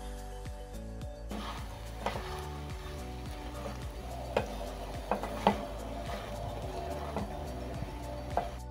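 A spoon stirring minced beef and potatoes as they sizzle in a metal pot, with a few sharp clinks of the spoon against the pot. The sizzle and stirring begin about a second in, under steady background music.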